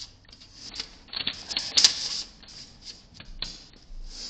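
Close, irregular rustling and scraping with small clicks, as of paper or clothing being handled right by the microphone, loudest just under two seconds in.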